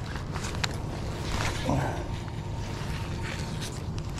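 Gloved hands fiddling with a baitcasting reel to clear a tangle in braided line: soft rustling and a few light clicks over a steady low hum.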